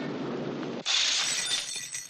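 Steady rain, then a little under a second in a sudden crash of shattering glass, with high ringing shards fading after it.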